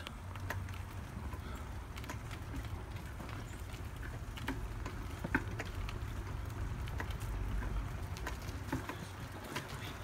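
Low, steady rumble of a three-wheeled bicycle rolling along a paved path, wind on the microphone and tyre noise, with scattered light clicks and rattles.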